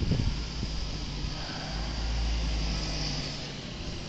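Road traffic on a snow-covered street: a vehicle passing, its low engine rumble swelling about a second and a half in and fading toward the end, with a few low bumps at the start.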